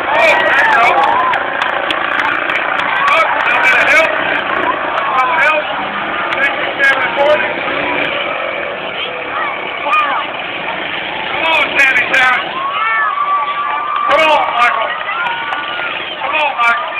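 Grandstand crowd shouting and cheering over the running engines of demolition derby cars, with several sharp knocks now and then and one long held shout or horn note near the end.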